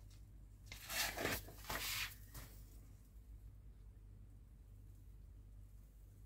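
Glossy magazine pages being turned by hand: two papery swishes, about a second and two seconds in, with a smaller rustle just after.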